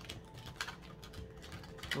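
A deck of oracle cards being shuffled by hand: an irregular run of light clicks and flutters as the card edges slap together.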